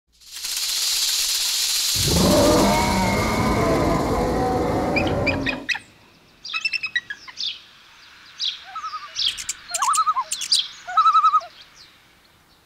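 A loud rushing noise for the first five and a half seconds, deepening about two seconds in and then stopping suddenly. Bird calls follow: short rapid dry rattles, such as a belted kingfisher gives, with quick chirps and a few arched notes.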